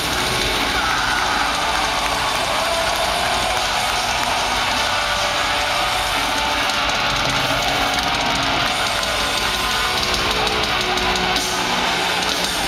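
Live heavy-metal concert sound in an arena: the band's amplified instruments and the crowd's shouting blend into a dense, steady wash.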